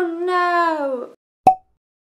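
A woman's drawn-out vocal sound, about a second long and falling in pitch, then a single short, sharp pop about half a second later.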